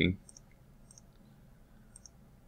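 A few faint, sharp computer mouse clicks, spaced out.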